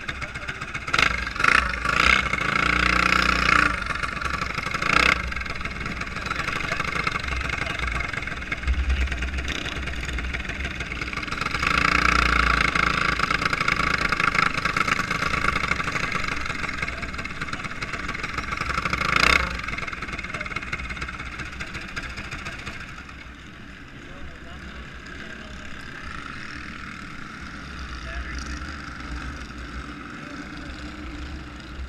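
Racing go-kart engine running under the onboard camera, with wind noise and a few sharp knocks in the first five seconds and another near twenty seconds. The engine is loudest in stretches and eases off after about twenty-three seconds.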